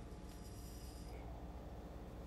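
Faint high-pitched buzz from a rechargeable electric candle lighter held to a candle wick, fading out about a second in, over a low steady hum.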